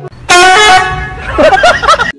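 A young dog's loud, drawn-out howl, held on one pitch and then breaking into a warbling yowl that rises and falls, which cuts off suddenly.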